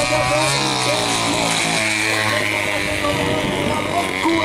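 A steady mechanical drone, with a race commentator's voice running over it during the greyhound race.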